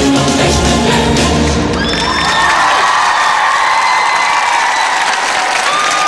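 A live song recording ends: the band and voices play for about two seconds, then audience applause and cheering take over beneath a last long held note.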